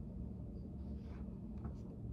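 A few short, faint scratches of pencil and paper at a study table, starting about a second in, over a steady low room hum.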